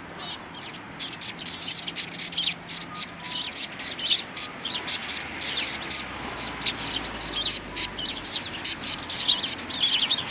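Eurasian tree sparrows chirping: a dense run of short, high chirps, several a second, starting about a second in.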